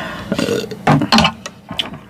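A woman burping twice in quick succession, short low burps about half a second and a second in.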